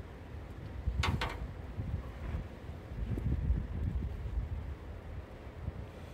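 Wind rumbling against the microphone, gusting louder partway through, with a brief rustle about a second in as the cable is handled.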